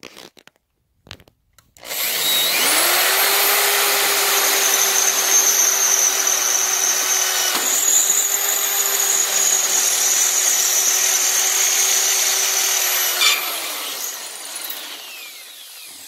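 Electric drill with a quarter-inch bit boring through the dolly's metal frame rail. The motor spins up about two seconds in, runs steadily under load with a brief dip about halfway, then stops and winds down near the end.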